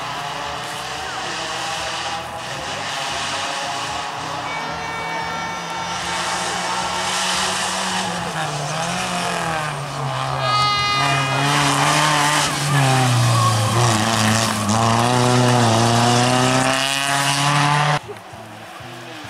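FSO Polonez Caro rally car driven hard on a stage, its engine revving up and dropping back several times as the driver shifts and lifts, growing louder as the car comes close. A short high squeal about ten seconds in.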